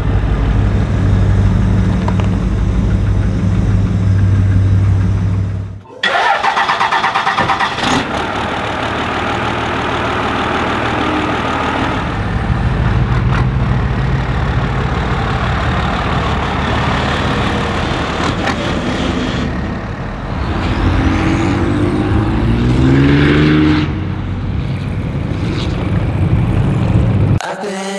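Engines of classic Chevrolet C10 pickup trucks running and revving across several cut-together shots, with a sudden change of sound about six seconds in. Near the end, the engine note rises twice as a truck revs.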